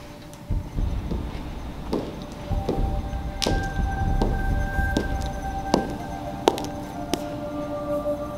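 Boot heels striking a hard hallway floor in slow, even steps, about one every three-quarters of a second from about two seconds in, over suspenseful background music with sustained tones and a low rumble.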